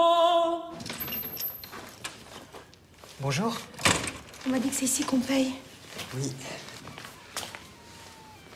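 A choir of men chanting in unison, with held sung notes, cutting off abruptly just under a second in. Then a quiet room with a few short spoken phrases and a couple of light knocks.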